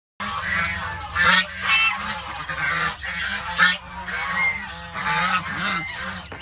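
A brood of white goose goslings peeping in a continuous, overlapping chatter, with louder calls about a second in and again at about three and a half seconds.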